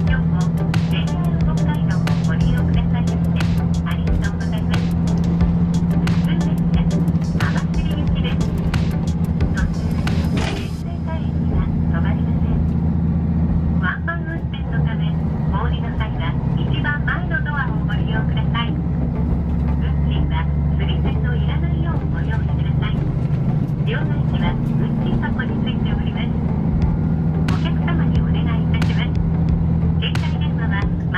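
Train cabin sound: the steady low drone of a diesel railcar's engine while moving, with scattered clicks and knocks and indistinct voices of people talking.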